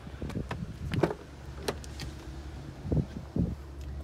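Clicks from a 2019 Alfa Romeo Giulia's rear door as the car is unlocked and the door is opened. Several sharp clicks come in the first two seconds, the loudest about a second in, and two duller thumps follow near the end.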